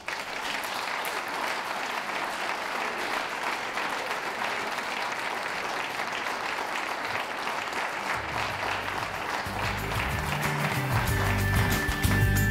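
Audience clapping steadily. Music with a bass line comes in about eight seconds in and grows louder near the end.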